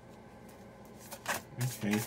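Oracle cards being handled, with a short papery rustle of a card slid from the deck about a second in.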